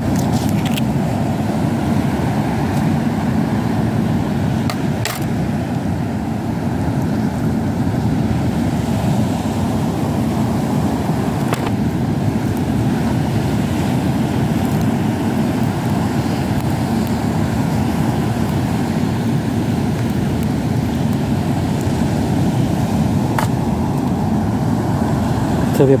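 Steady, loud roar of strong onshore wind and rough surf on an open beach, with a few faint clicks scattered through it.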